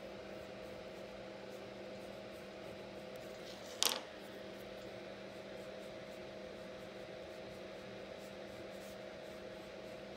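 Wax crayon strokes scratching faintly on drawing paper, over a steady low room hum, with one short sharp tap about four seconds in.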